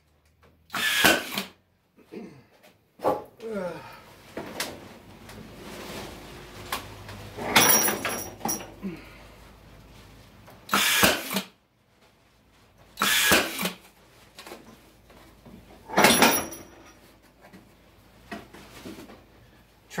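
Brad nailer firing brads into weathered wooden pickets, about five shots a few seconds apart, with quieter handling and scraping of the wood between them.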